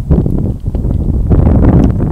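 Wind buffeting a clip-on microphone: a loud, low, rumbling roar with no speech over it.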